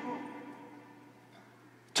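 A pause in a man's speech: the echo of his last words dies away in a large hall, leaving a faint steady hum, and his voice starts again right at the end.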